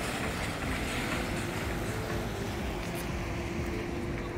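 Steady engine rumble and outdoor traffic noise, with a faint steady hum running under it from about a second in.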